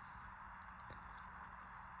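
Near silence: a faint steady background hiss and hum with one faint tick about a second in.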